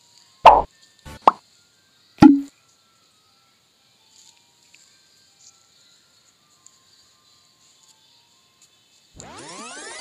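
Three short, loud plops in the first two and a half seconds, then silence. About a second before the end comes a shimmering effect of many sweeping tones rising and falling together.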